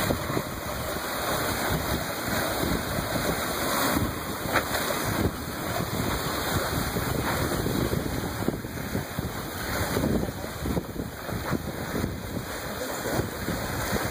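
Wind buffeting the microphone over the rush of water and waves at sea, a steady noise broken by irregular gusts.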